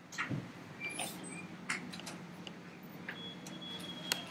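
Room noise with scattered short knocks and clicks, and a faint steady high tone starting about three seconds in.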